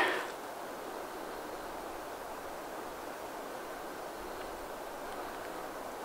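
Steady, even hiss of background noise with no rhythm or distinct events; no saw strokes are heard.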